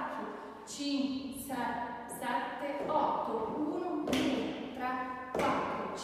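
A woman's voice speaking and counting dance steps, with thuds and taps of cowboy-boot steps on the floor.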